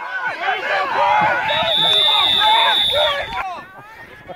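Spectators cheering and shouting over one another during a youth football play, swelling about a second in. A long, steady whistle blast, a referee's whistle, sounds over the crowd from about a second and a half in and stops just past three seconds.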